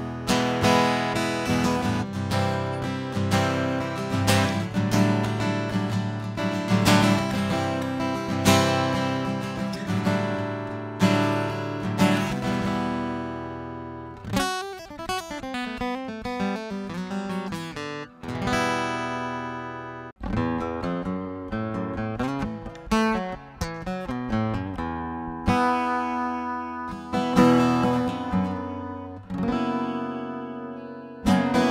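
Steel-string acoustic guitar with a piezo pickup, played through a Harley Benton Custom Line Acoustic Preamp pedal: strummed chords, a sparser ringing passage midway with two brief sudden stops, then strumming again.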